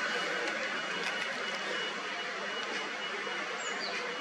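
Steady outdoor background noise: an even hiss with a few faint clicks, and a brief high chirp near the end.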